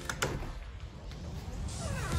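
A door latch clicks open, followed by a short falling squeal, and outdoor ambience swells in near the end as the door swings open.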